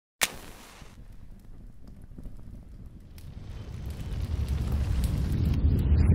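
Logo intro sound effect: a sharp hit, then a low fire-like rumble that swells steadily louder.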